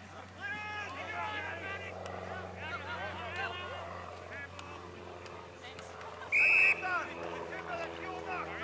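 Players on the field shouting calls to each other. About six seconds in, an umpire's whistle gives one short, loud blast, the loudest sound here.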